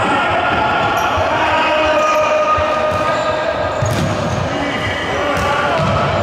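A futsal ball being dribbled and kicked on a wooden sports-hall court, with a few sharp knocks of ball and feet. Voices call and shout throughout.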